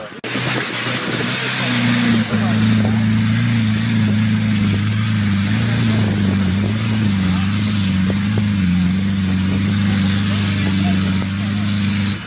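Jeep Grand Cherokee engine held at high, steady revs under load on a steep rocky off-road climb, its note wavering only slightly, over a loud steady hiss of tyres working loose dirt and stones. The sound cuts in abruptly just after the start.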